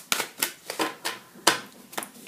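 A deck of large tarot cards being shuffled by hand: a run of crisp snaps and slaps as the cards fall against each other, the sharpest one about three-quarters of the way through.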